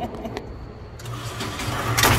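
Motorised target carrier running with a steady low hum as it brings the paper target back up the lane; a few faint clicks sound in the first half-second.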